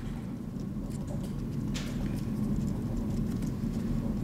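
Steady low room hum with faint scratching and ticking of a pen writing on a paper form, and one brief louder scrape a little under two seconds in.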